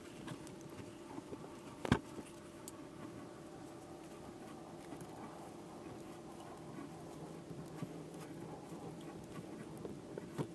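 Faint metal clicks and scrapes of a small crescent wrench turning a greased thread tap as it cuts new threads in a drilled-out engine-block bolt hole. One sharp metallic click comes about two seconds in, over a steady low hum.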